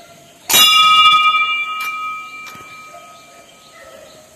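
A temple bell struck once about half a second in, its clear ringing tone dying away over about three seconds.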